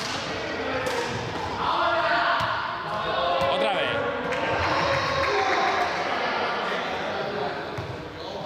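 Indistinct voices of several people echoing in a large sports hall, with a few short knocks or thuds.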